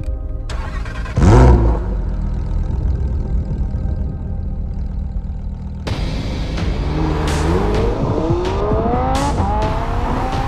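Lamborghini Huracán EVO's V10 engine starting with a loud, short flare of revs about a second in, then idling with a low steady hum. From about seven seconds in it accelerates hard, the revs climbing in a series of rising sweeps broken by brief gear changes.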